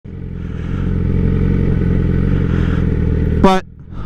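Sport motorcycle engine running steadily at low speed, slowly growing louder, then cutting off abruptly about three and a half seconds in, followed by a brief pitched sound.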